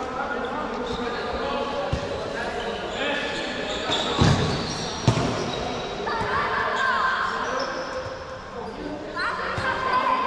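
Futsal ball struck and bouncing on a hard indoor court, with two sharp impacts about a second apart near the middle, echoing in a large sports hall amid players' shouts.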